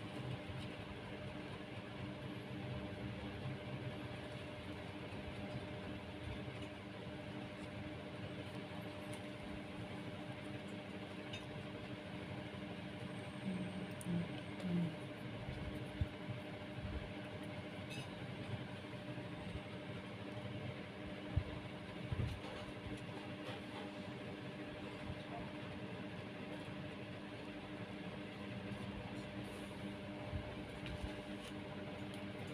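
Steady low mechanical hum, like a running fan, in a small room, with a few soft knocks around the middle as jute-covered pots are handled on a table.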